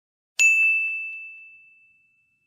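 A single bright ding, a bell-like sound effect struck about half a second in and ringing away steadily over the next second and a half.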